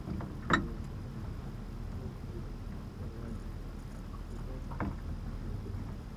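Light clicks from a three-jaw gear puller being handled and hooked onto a boat steering wheel, one sharp click about half a second in and a fainter one about five seconds in, over a steady low background rumble.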